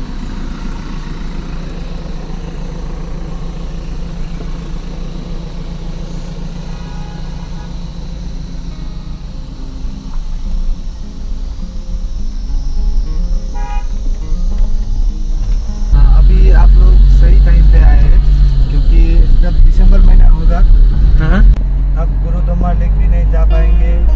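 Cabin noise of a moving Toyota car on a rough mountain road: a steady engine hum with tyre and road rumble. It grows louder through the middle and becomes much louder and heavier about two-thirds of the way in.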